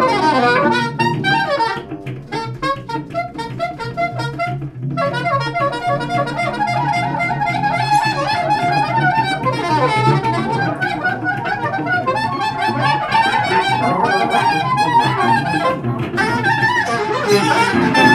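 Live improvised jazz: a soprano saxophone plays runs of short notes over guitar and laptop electronics. The playing thins out about two seconds in and grows fuller again from about five seconds on.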